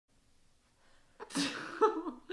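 Near quiet at first. About a second and a quarter in comes a sudden, short burst of breath and voice from a person, followed near the end by a brief voiced sound.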